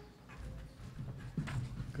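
A few soft knocks and shuffling footsteps close to a lectern microphone as speakers change places, over faint room tone; a man's voice starts right at the end.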